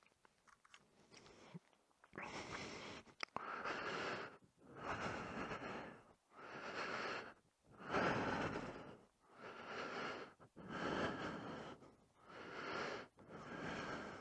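A person breathing close to the microphone: steady, even breaths in and out, each about a second long with short pauses between, starting about two seconds in.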